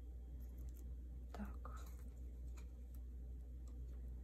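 Faint handling of photocards in a ring binder's plastic sleeves: light rustles and small clicks over a steady low hum, with a brief soft breathy murmur about a second and a half in.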